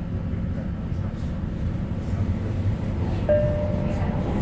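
Tyne and Wear Metrocar running along the track, heard from inside the car: a steady low rumble of wheels on rails, with a brief steady whine coming in near the end.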